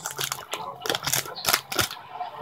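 Torn-open plastic wrapping around a new pack of paper crinkling and crackling as it is handled, in irregular sharp crackles.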